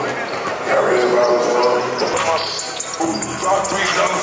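Basketballs bouncing on a hardwood gym floor during warmups, heard under a voice.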